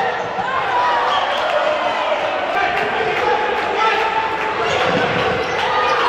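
Futsal match play in a large sports hall: the ball struck and bouncing on the wooden court, shoes squeaking, and players calling out, all with hall echo.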